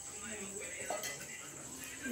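Faint voices of people talking in the background, with a steady high-pitched whine running underneath.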